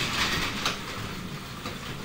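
Overhead garage door being pushed up by hand, rolling along its metal tracks with a noisy rattle that gets quieter toward the end.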